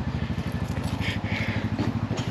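An engine idling steadily, with a low, even, rapid pulse.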